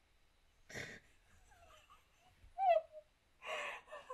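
A person's breathy gasps: one about a second in and a louder one near the end, with a short falling vocal sound between them.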